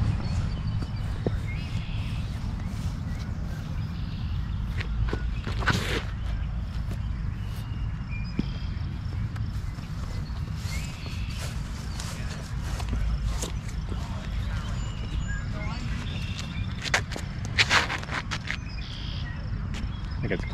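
Outdoor ambience with a steady low rumble throughout, footsteps, and a few sharp clicks or knocks, most of them in a cluster near the end. Faint short high chirps come now and then.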